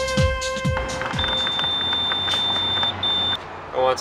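Background music stops about a second in. Then a gas pump gives one long high-pitched electronic beep and a short second beep over street noise.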